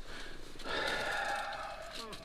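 A person's audible breath through the nose, lasting about a second and starting a little after half a second in.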